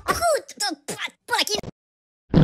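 Cartoon character voice (Pocoyo) giggling in a string of short bursts with falling pitch, stopping about a second and a half in.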